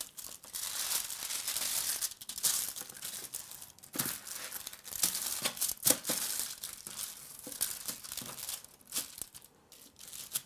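Aluminium foil lining a baking tray crinkling and rustling irregularly, with a few sharper crackles, as hands massage marinade into a rack of pork ribs lying on it; it eases off near the end.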